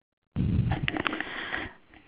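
A person's breath or sniff into a microphone: a breathy rush of air that starts suddenly out of dead silence, with a couple of small clicks, and fades after just over a second.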